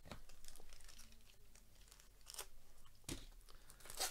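A trading-card pack's wrapper being torn open and crinkled by hand, faintly, the rustle strongest in the first second with a few sharper crackles later on.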